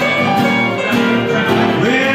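Live band music: a guitar played with a keyboard behind it in a steady blues tune, an instrumental passage without singing.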